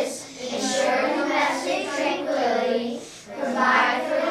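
A group of young children singing together in unison.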